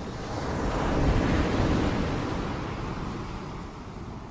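An ocean wave washing in: surf noise that swells for about a second, then slowly fades.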